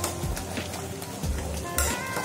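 Soft background music, with the faint scrape and knock of a steel spoon stirring a thick curry in a metal pot and a sharper clink near the end.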